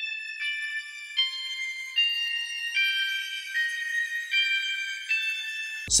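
A guitar preset ("Smoked Trem-O") plays a slow, high melody through an "Echo Magic" ambient delay, moving to a new held note or chord about every 0.8 seconds. It is thin and bright, with no bass under it.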